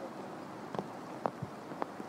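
Quiet golf-course ambience: a faint steady hiss broken by a few soft ticks, about half a second apart in the middle.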